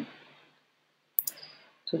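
A single sharp click about a second in, during a quiet pause in a small room; a voice trails off at the start and resumes right at the end.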